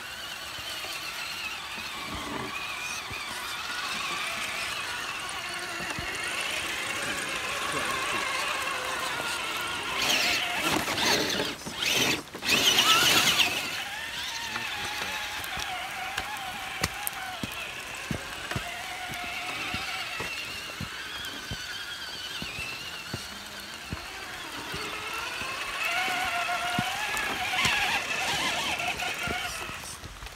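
Electric motors and gear drives of RC crawler trucks whining, the pitch wandering up and down with the throttle as they crawl through mud, with a louder rushing noise for a few seconds about ten seconds in.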